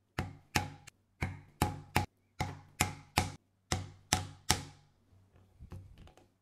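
Repeated sharp strikes on a diamond-pronged stitching chisel, driving it through thick veg-tan leather to punch sewing holes, about two to three blows a second. The blows stop about four and a half seconds in, leaving a few faint ticks.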